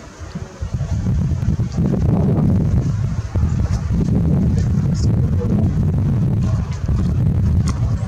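Wind buffeting the camera's microphone: a loud, gusting low rumble that swells and dips.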